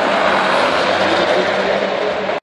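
A white SUV driving along the circuit's straight, its engine and road noise steady.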